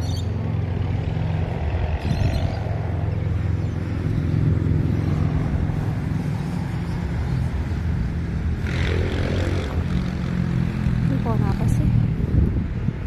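A steady low engine hum, like a motor vehicle running, with brief noisier swells.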